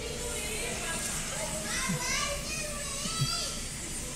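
Faint, high-pitched voices, like children's, twice over a few seconds, over the steady low rumble of a car's interior while it waits in traffic.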